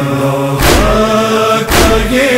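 Noha lament chanted by a man's voice, held long notes with a chorus behind, over a regular percussive beat about once a second, two beats falling in these seconds.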